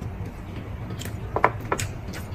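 Quiet eating sounds at a table: a few short slurps or utensil sounds about one and a half seconds in, over a low steady hum.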